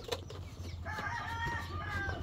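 A rooster crowing once, a call of about a second that starts about a second in.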